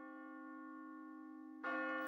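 A single sustained bell-like tone in background music, fading slowly, with a new, louder note struck near the end.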